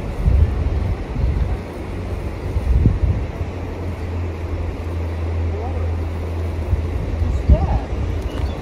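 Wind buffeting the phone's microphone outdoors, an uneven low rumble, with a steady low hum joining it for a few seconds in the middle.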